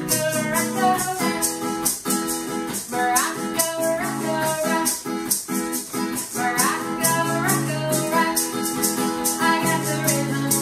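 Acoustic guitar strummed while a maraca is shaken in a steady beat, with a woman singing over them.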